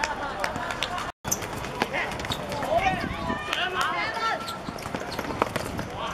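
Footballers shouting and calling to each other on an outdoor pitch, mixed with sharp knocks of the ball being kicked and footsteps. The sound cuts out completely for a moment about a second in.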